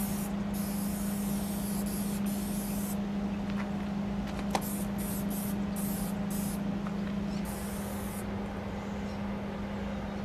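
Aerosol spray paint can hissing in bursts as white paint is laid onto the side of a steel freight car: long sprays at first, a run of short quick bursts in the middle, then a long spray again later. A steady low hum runs underneath, with a single brief click about four and a half seconds in.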